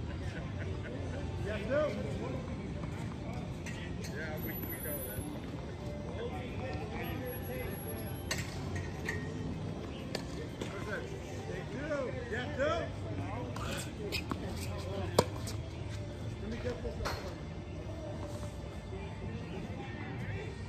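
Indistinct background voices with faint music, and one sharp knock a little past the middle.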